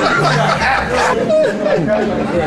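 Several people talking over one another and laughing together.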